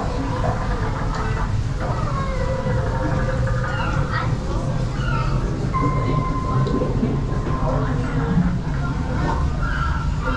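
Steady low mechanical rumble and hum of a boat dark ride running through an enclosed tunnel, with indistinct voices and faint pitched sounds coming and going over it.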